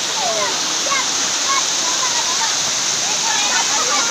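Water rushing steadily down a rocky channel of a waterfall cascade, a loud, even rush. Faint voices of people calling are heard over it.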